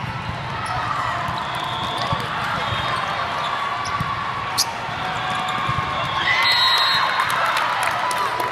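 Volleyball tournament hall din: volleyballs being hit and bouncing on many courts as sharp smacks. Under them, many voices of players and spectators echo in the large hall, growing louder about six seconds in.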